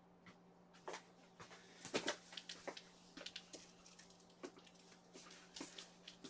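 Faint, irregular clicks and taps, a dozen or more, loudest about two seconds in, over a steady low hum.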